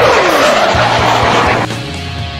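Military jet flying low past, its engine noise falling in pitch as it goes by, then cut off suddenly about 1.6 s in and replaced by rock music.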